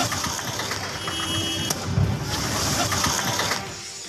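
A steady, rough mechanical rattle, with a low thump about two seconds in.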